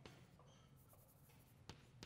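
Faint chalk writing on a blackboard, with two light taps of the chalk, one at the start and one near the end, over a low steady room hum.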